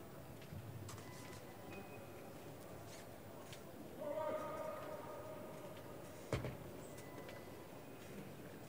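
Quiet indoor arena ambience with faint distant voices, a brief voiced stretch about four seconds in, and a single sharp knock a little after six seconds.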